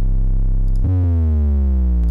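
Electronic bass samples auditioned one after another: a sustained deep 808 bass note, then about a second in a sub-drop, a deep boom whose pitch slides steadily downward.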